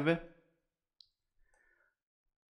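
The tail of a man's spoken word, then near silence broken by one faint, short click about a second in.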